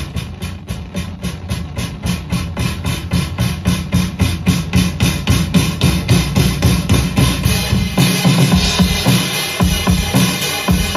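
Mixed song playback: a live drum kit plays a fast, even beat with bass under it, coming in suddenly at the start. The top end gets brighter about eight seconds in.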